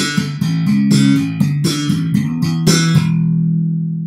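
Custom Alembic Scorpion five-string electric bass played as a short run of notes, each with a sharp, bright click on the attack. From about three seconds in, the last note is left to ring and sustain.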